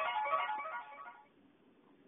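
A short melodic jingle of quick, guitar-like plucked notes that dies away about a second in.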